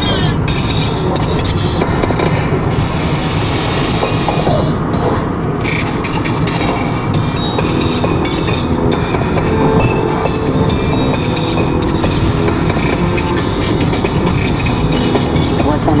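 Road and tyre noise inside a moving car crossing a steel truss bridge, a steady rumble, with the car radio playing music underneath.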